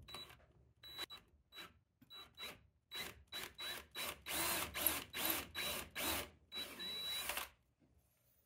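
DeWalt cordless drill driving a screw through a heavy-duty steel drawer slide into wood, its motor whining in many short trigger bursts. The bursts grow longer and louder from about four seconds in, with a last longer run near the end before it stops.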